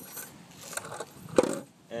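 Handling of a homemade RC trailer's hinged plywood ramp: light knocks and one sharp clack about a second and a half in.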